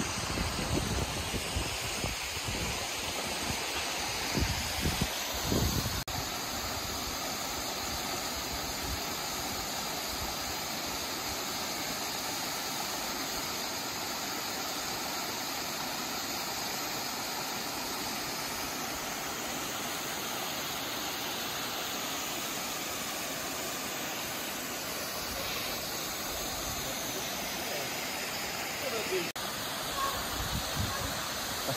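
Steady rush of a tall waterfall, Rainbow Falls, pouring over a rock ledge onto rocks and into a pool, with a few low thumps in the first few seconds.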